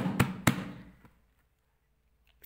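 The tail end of a man's speech, then two sharp clicks in the first half second, followed by near silence.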